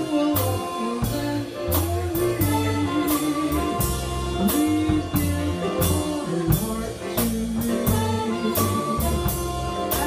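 Big band playing an instrumental jazz passage: held horn lines over a moving bass line, with drum kit and cymbal hits keeping a steady beat.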